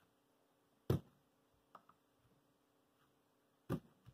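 Two short knocks of a plastic Speedstacks stackmat timer being handled on a wooden desk, about a second in and again near the end, with a couple of faint ticks between.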